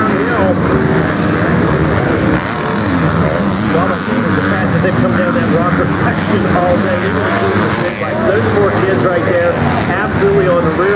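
Several dirt bikes' engines running and revving together during a motocross race, their overlapping pitches rising and falling continuously.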